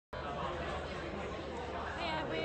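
Background chatter of many people talking at once in a busy festival tent, a steady murmur of voices.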